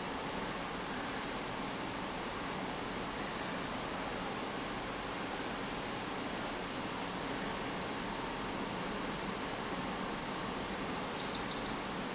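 Steady room noise of ventilation. Near the end an interval timer sounds a few short, high beeps and then starts a longer beep, marking the end of a 45-second exercise interval.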